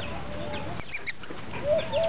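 Chickens clucking in the background: a few short, scattered calls, with a rising call near the end.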